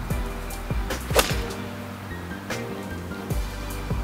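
Background music with a steady beat, and a single sharp strike of a golf club hitting the ball off the tee about a second in.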